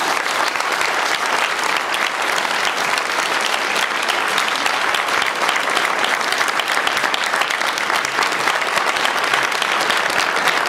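Lecture-hall audience applauding steadily: dense, sustained clapping at the end of a talk.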